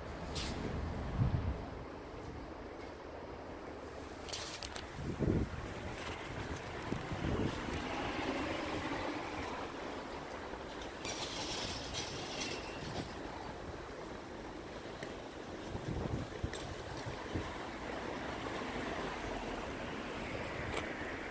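Steady outdoor background noise with low wind rumble on the microphone and a few soft handling bumps.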